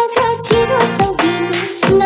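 A girl singing an upbeat song over a backing track with a steady beat.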